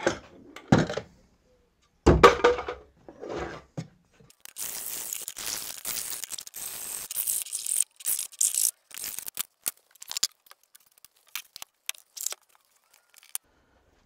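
A few knocks as a wooden box frame is handled, the loudest about two seconds in, then a metal hand file rasping along its freshly jigsawn wooden edges for about five seconds to take off the splinters, followed by scattered light clicks.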